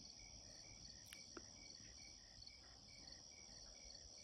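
Faint insect chorus of crickets: a steady high-pitched trill with short chirps repeating about four times a second.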